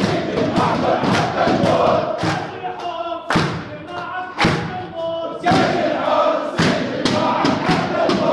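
A crowd of prison detainees chanting revolutionary protest slogans together, cut by sharp, loud beats roughly once a second.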